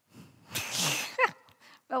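A person's loud, hissy burst of breath, about half a second long, followed by a short vocal sound falling in pitch, then a brief 'oh' near the end.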